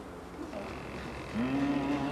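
A voice in a group singing a folk-dance song starts a long held low note about one and a half seconds in, sliding up into it, after a brief lull between sung lines.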